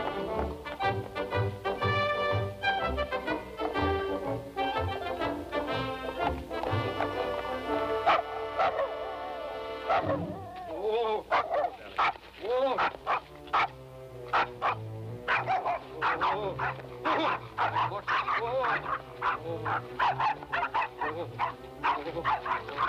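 Film score music for the first half, then a dog barking in many short, quick barks from about halfway through.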